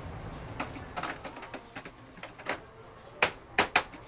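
Hard plastic clicks and taps as a white plastic part is handled and pushed into an opening in an inkjet printer's body, ending with three sharp clicks near the end as it snaps into place.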